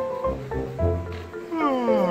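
Background music, and near the end a golden retriever's yawn: a drawn-out whine that falls steadily in pitch.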